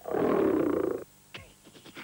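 A cartoon cat's purr sound effect, lasting about a second, as the tamed cat settles contentedly.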